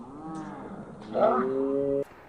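A man's long, drawn-out vocal call, rising and falling in pitch at first, then held on one low note for about a second before stopping abruptly.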